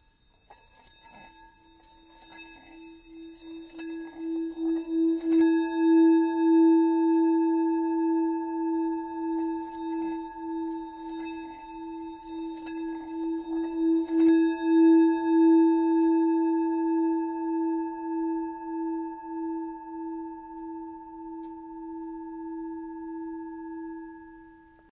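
A singing bowl ringing with a slow, even pulsing wobble, swelling up over the first several seconds. A high hiss lies over it for the first five seconds and again from about nine to fourteen seconds, and the bowl rings on alone between and after.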